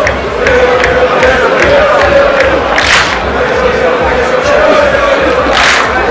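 Voices holding long chanted notes over a steady beat of about two to three strikes a second, with two louder hissing bursts, one about halfway through and one near the end.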